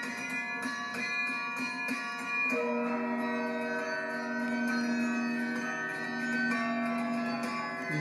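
Carillon playing a slow tune: several bell notes ring together and are held, shifting to new notes a couple of times.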